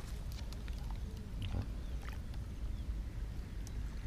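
Low, steady wind rumble on the microphone at the water's edge, with a few faint clicks and short faint chirps over it.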